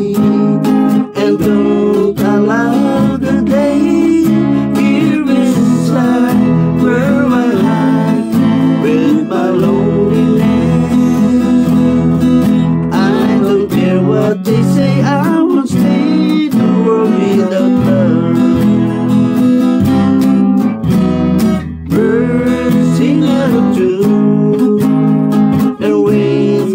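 An electric guitar and an acoustic guitar played together, a strummed chord accompaniment under a gliding melodic line.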